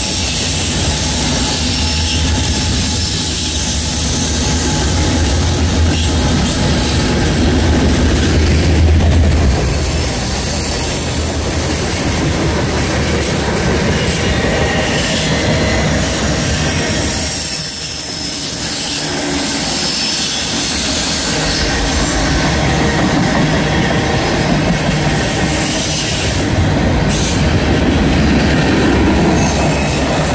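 Freight train cars rolling past on steel wheels, a steady rumble of wheels on rail with thin high wheel squeal. A low engine drone from the lead locomotive, pulling away, fades out about ten seconds in.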